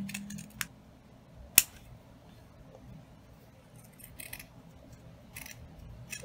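Scissors snipping through the tail ends of a corduroy velvet ribbon, cutting them at an inward angle: four separate snips, the sharpest a crisp click about one and a half seconds in.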